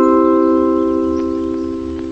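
A chord of four bell-like chime notes, struck in falling pitch just before, ringing on together and slowly fading: a TV-station-style ident jingle.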